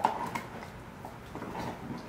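Belgian Malinois chewing on a marrow bone: teeth clicking and scraping on the hard bone, with a sharp knock at the very start and scattered lighter clicks after.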